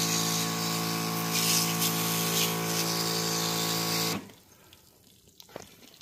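Pressure washer spraying water onto an air conditioner's coil: a steady pump hum under the hiss of the spray. It cuts off suddenly about four seconds in, and near silence follows.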